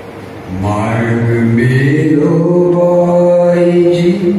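A man singing unaccompanied into a microphone. After a short pause he sings one long drawn-out phrase whose pitch steps up about two seconds in and is then held.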